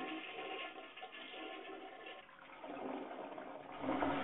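A rushing, gurgling flow of water that swells and eases, dipping in the middle and growing louder again toward the end before cutting off suddenly.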